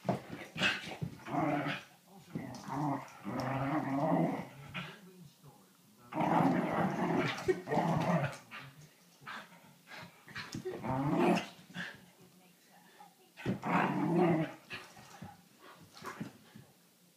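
Two whippets play-fighting and growling at each other in about five rough spells, each a second or two long, with short pauses between.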